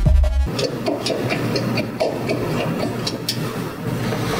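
Electronic outro music with a deep bass beat that stops abruptly about half a second in. It gives way to a steady rough noise dotted with irregular clicks, over a low hum.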